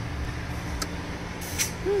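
Low steady rumble of a car idling, heard from inside the cabin, with a single click just under a second in and a brief hiss of air about a second and a half in, as a low tire is being aired up.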